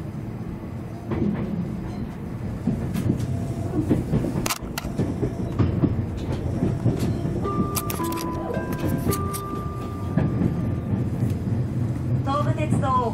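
Tobu 500 series Revaty electric train running, heard inside a passenger car: a steady low rumble with irregular clicks and knocks from the track, and a few brief steady high tones about two-thirds of the way through.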